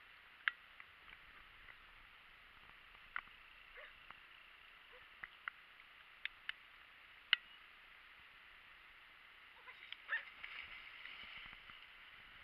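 Water splashing, loudest about ten seconds in, as a Leonberger dog swims through the river. It plays over a faint steady hiss, with a few short, sharp, high chirps scattered through the earlier seconds.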